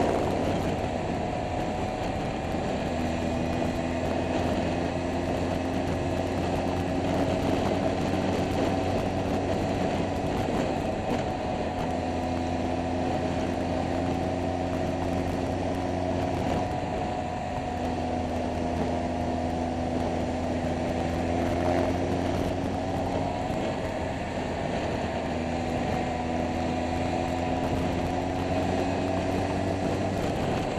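Scooter engine running at cruising speed with wind and road noise. Its note holds steady, drops away and comes back rising slightly about four times.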